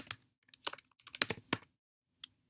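Typing on a computer keyboard: about half a dozen separate keystrokes in the first second and a half, then a pause.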